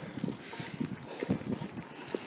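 A person's footsteps while walking with a handheld phone: a run of dull, low thumps at an uneven pace, several a second.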